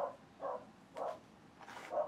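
A dog barking, four short faint barks about half a second apart.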